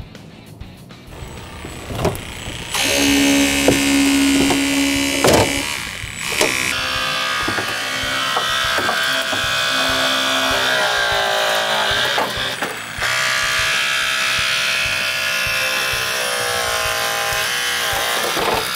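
Hydraulic rescue cutter running in long stretches while cutting through the trunk lid hinges of a car, its pump whining steadily with the pitch dipping and rising at times. It stops briefly twice.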